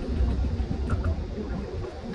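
Outdoor background noise: a steady low rumble with a faint, even hiss above it, and a few faint short sounds about a second in.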